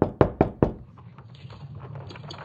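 Rapid knocking: four sharp knocks about five a second, ending after about half a second, then a faint steady low hum.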